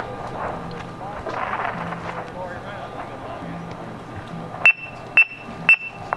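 Indistinct talk in the background, then about three-quarters of the way in an electronic metronome starts clicking: short, sharp, high beeps, evenly spaced at about two beats a second, giving the snare line its tempo.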